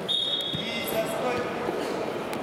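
Voices shouting in a large, echoing sports hall during a freestyle wrestling bout, with a high steady tone lasting most of the first second and dull thuds from the wrestlers' bodies on the mat during a takedown.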